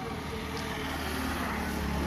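A motor vehicle passing on the road, its engine hum and tyre noise growing steadily louder.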